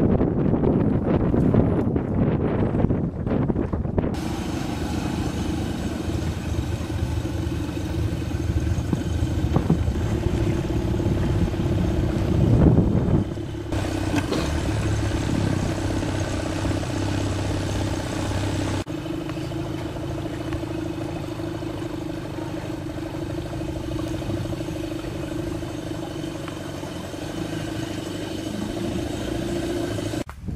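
A small boat's engine running steadily, heard from aboard, as a continuous drone. The sound changes abruptly a few times as the footage cuts.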